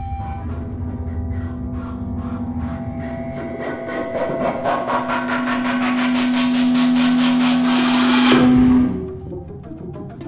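Contemporary chamber ensemble with live electronics playing a rapid, repeated pulsing figure over a sustained low note. It swells in a long crescendo and cuts off suddenly about eight seconds in, leaving a quieter texture.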